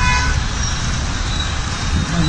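Steady low rumble of road traffic and rushing floodwater, with a brief car horn toot right at the start.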